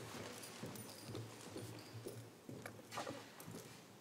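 Faint footsteps and shuffling on a hard floor, with a few light knocks, as a seated crowd gets to its feet and people walk off a stage.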